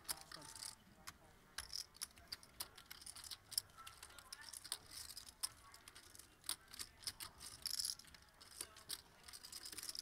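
Clay poker chips clicking and clacking at the table in faint, irregular taps as chip stacks are handled.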